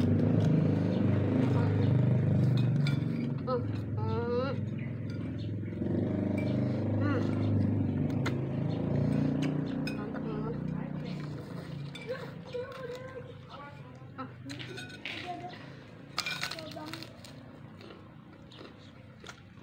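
Two people eating noodles from bowls: spoons clink against the bowls, with chewing and a few short wavering hums of enjoyment. A low background murmur runs under it and fades away after about twelve seconds, leaving scattered sharp clicks near the end.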